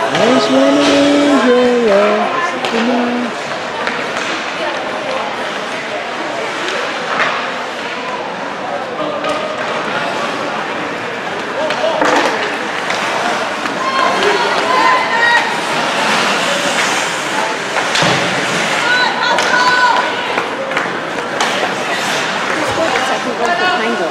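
Ice hockey rink during play: spectators' voices and calls from the stands over the scrape of skates and the clatter of sticks and puck against the boards. A long pitched call stands out in the first few seconds.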